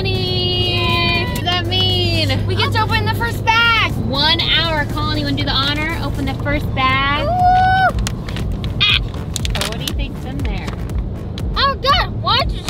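High-pitched, excited vocal sounds, some held and some swooping, over the steady hum of a car's cabin on the road. In the last few seconds a paper gift bag crinkles and rustles as it is pulled open.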